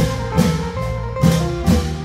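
Isan long-drum (klong yao) ensemble playing: deep drum strokes with clashing hand cymbals, roughly twice a second, over held melodic notes.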